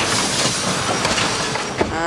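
Loud, steady rushing and rumbling noise of a crash, a van smashing into a house, easing slightly toward the end.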